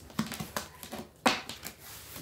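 Tarot cards being shuffled and handled: a handful of short, crisp flicks and taps, the loudest a little past halfway.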